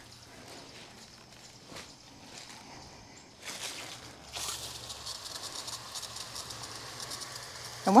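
Garden hose watering wand spraying water onto soil and leaves: a steady hiss that starts about four seconds in.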